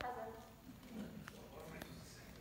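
Faint stage dialogue: a single voice speaking, loudest at the start and then trailing off. A couple of light clicks come in the second half.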